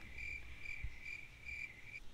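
Faint, steady high-pitched insect trill, swelling and fading about twice a second, with a soft low bump about halfway through.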